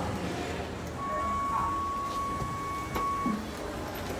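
Lift's electronic tone, one steady beep held for about two seconds, with a sharp click near its end.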